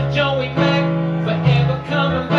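Live song: a man singing into a microphone over sustained chords played on a Roland RD-700 stage keyboard.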